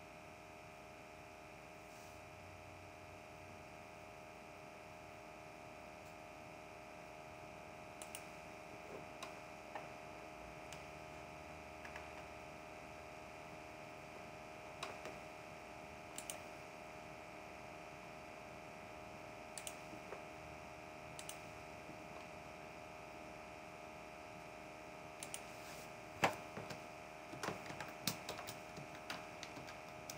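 Faint clicks of a computer keyboard and mouse, single clicks every second or two at first, then a quick run of them in the last few seconds, over a steady low hum.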